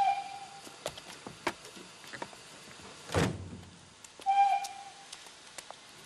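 Two short train whistle blasts about four seconds apart, with a heavy carriage door slamming about three seconds in and scattered clicks and knocks between them.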